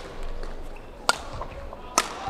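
Badminton rackets striking the shuttlecock in a rally: two sharp smacks, about a second apart, with the second near the end.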